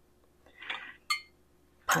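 A soft scrape, then a single brief clink a little after a second in: a stainless steel canning funnel knocking against a glass pint jar as it is lifted off.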